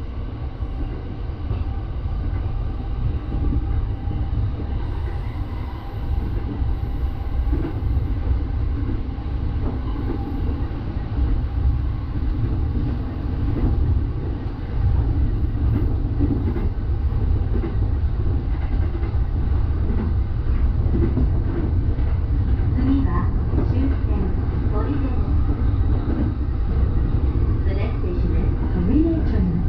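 Electric commuter train running along the line, heard from inside the driver's cab: a steady low rumble of wheels and running gear that grows louder over the first fifteen seconds and then holds.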